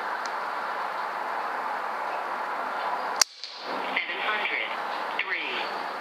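A single sharp crack from a .22 Umarex Notos pre-charged pneumatic air carbine firing one pellet, a little over three seconds in. Before it there is a steady background hiss.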